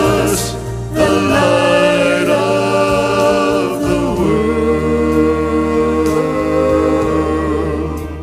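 A mixed gospel vocal group of men's and women's voices singing in harmony into microphones, holding long chords over steady low accompaniment, with a change of chord about halfway through.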